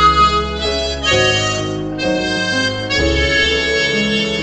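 Harmonica playing a slow melody in long held notes that change about once a second, over an accompaniment with sustained low bass notes.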